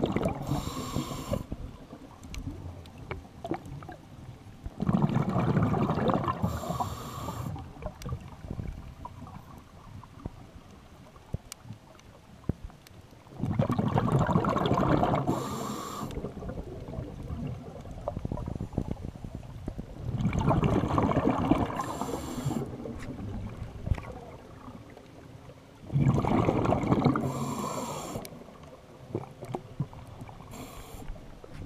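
A scuba diver breathing through a regulator underwater: five long bursts of exhaled bubbles, each about two seconds long and ending with a short hiss, come one every six to eight seconds.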